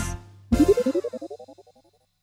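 The last sung note of a children's song dies away. About half a second later comes a cartoon transition jingle: a quick rising run of repeated notes, loudest at first and fading out over about a second.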